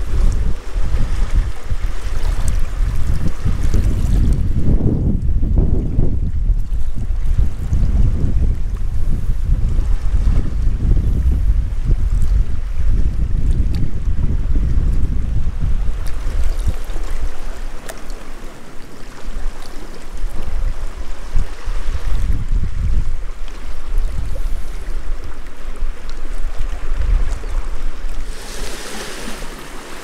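Wind buffeting the microphone in gusts, a heavy low rumble, over small sea waves washing against shoreline rocks.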